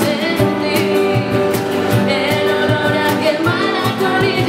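Live acoustic band: a woman singing over strummed acoustic guitars and a steady cajón beat.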